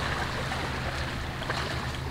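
Steady outdoor background noise: a low rumble under an even hiss, with a faint tick about one and a half seconds in.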